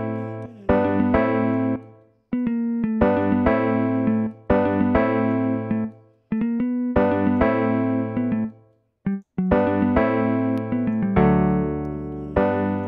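A sampled jazz guitar instrument in FL Studio playing a looping progression of sustained chords, about one to two seconds each, with brief single notes sounding between some of them as notes are added in the piano roll.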